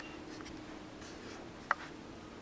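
Faint scratching and rustling against paper, with one sharp click about three-quarters of the way through, over a faint steady hum.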